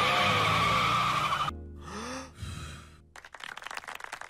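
A car's tires squealing as it drives off, loud for about a second and a half, then cutting off suddenly to a quieter passage with a short bit of music.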